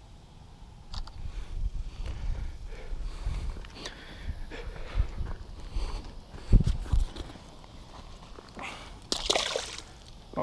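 Water sloshing and splashing as a small largemouth bass is landed, handled and let go at the edge of the pond, with low irregular rumbling and knocks of handling on the microphone. A loud splash near the end as the bass goes back into the water.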